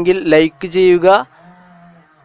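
A voice speaking, then a faint, steady low hum for the last moments.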